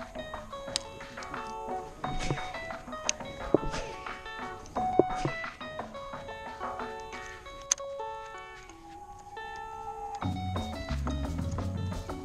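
Background music: a melody of short, bell-like notes, joined by a low bass line near the end.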